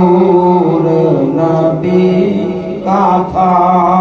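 A man's voice chanting a devotional recitation into a microphone in long, held melodic phrases, with a short pause for breath about three seconds in.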